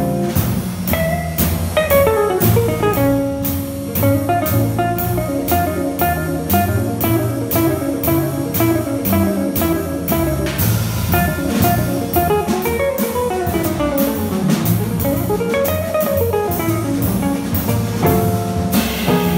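Jazz trio of archtop electric guitar, plucked upright double bass and drum kit playing together: the guitar plays single-note melodic lines, with quick runs up and down near the end, over the bass line and a steady cymbal beat.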